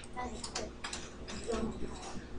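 Light, irregular clicks and taps from a computer keyboard and mouse, several short clicks at uneven spacing.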